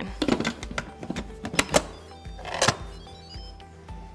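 Instant Pot Duo lid being set on the pot and turned shut: a run of plastic-and-metal clicks and knocks in the first couple of seconds, with a short scrape later, over background music.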